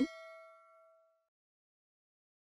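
A single bright metallic ding: several tones ring together and fade out within about a second and a half.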